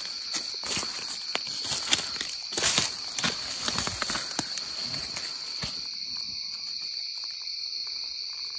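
A steady, high-pitched chorus of night insects, with footsteps and rustling in dry leaf litter for the first six seconds or so, after which only the insects remain.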